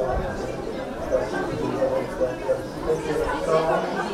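Voices talking, with a low background rumble.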